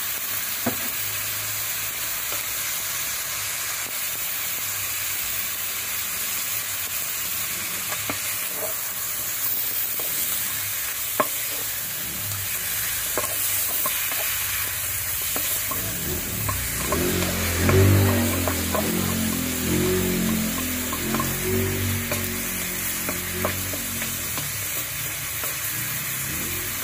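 Raw salted chicken wings searing in hot oil in a wok: a steady sizzle with scattered small pops. Partway through, a louder low-pitched sound comes in for several seconds.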